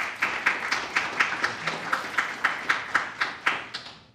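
A small group applauding, with one clapper close to the microphone standing out at about four claps a second; the clapping dies away near the end.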